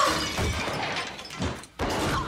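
Glass shattering on impact, loudest at the start and dying away, followed by two short knocks about a second and a half in.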